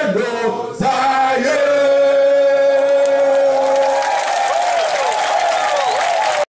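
A large crowd singing together in unison, holding one long note, then breaking into looser, scattered voices about four seconds in.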